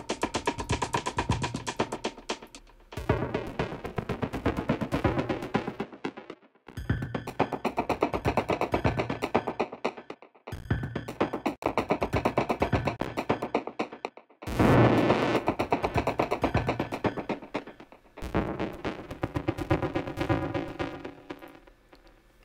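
Sliced funk drum break played from an Ableton Live drum rack through Redux bit reduction and downsampling and a filter delay, heard as a dense, rapid run of processed drum hits. It plays in stretches of three to four seconds with short stops between them, while the Redux downsampling is turned up. The last stretch takes on a ringing, pitched edge.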